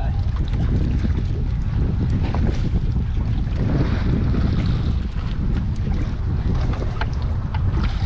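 Wind buffeting the camera microphone in a steady low rumble, over water sloshing against a boat's hull.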